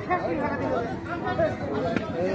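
Voices talking throughout, several people chattering over one another with no clear words.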